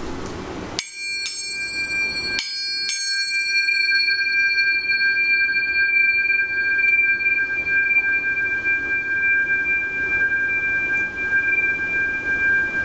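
A pair of Biosonic tuning forks tuned to C and G, struck four times in quick succession near the start. Bright high overtones ring out after each strike and fade within a few seconds, while the two pure tones, a fifth apart, keep ringing steadily with hardly any decay, showing a long ring time.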